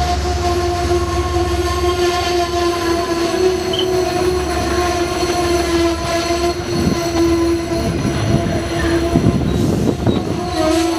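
Amtrak Amfleet passenger cars rolling past and slowing for a station stop, their brakes giving one steady squeal over the rumble of the wheels. A few knocks come from the running gear near the end.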